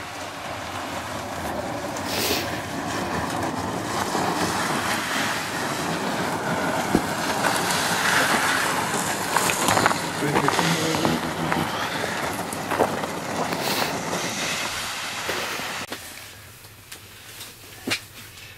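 Plastic sled base of a pop-up ice shanty scraping and grinding as it is dragged across lake ice, with a few knocks along the way; the noise stops a couple of seconds before the end.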